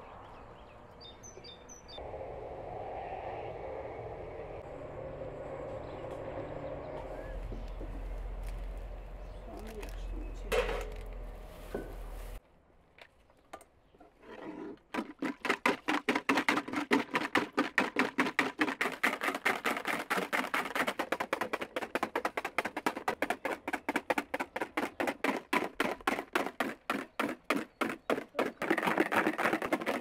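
Outdoor ambience with a few bird chirps near the start, then a brief near-silent gap. From about halfway on comes a fast, even run of strokes, about four a second, from food being worked by hand at an outdoor table.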